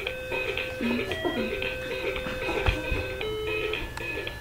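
LeapFrog children's learning toy playing a simple electronic tune through its small speaker, a melody of steady beeping notes.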